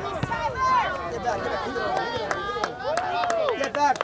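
Spectators' voices on the sideline of a soccer game, several people talking and calling out at once, with a quick series of sharp clicks in the second half.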